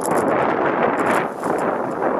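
A sled sliding fast down a hill of powdery snow: a steady hiss of snow rushing under and around the sled.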